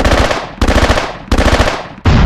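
Three bursts of machine-gun fire, each a rapid rattle of shots that starts loud and fades within about half a second, coming about two-thirds of a second apart.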